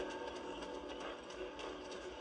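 Faint sound of horses walking, with soft hoof clops over quiet outdoor ambience.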